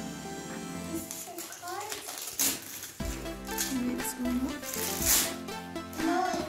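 Background music over the crinkle and rustle of gift wrap and packaging being handled, with louder crackles about two and a half seconds in and again about five seconds in.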